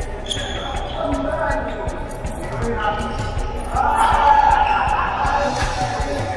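Shuttlecock being struck by badminton rackets, sharp clicks echoing in a large hall, mixed with players' voices that grow louder about four seconds in.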